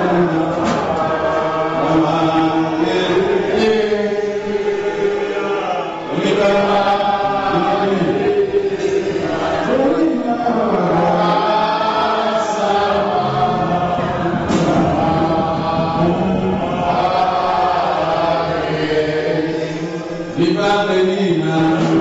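A congregation's many voices chanting together in rising and falling phrases, loud and continuous, dipping briefly twice.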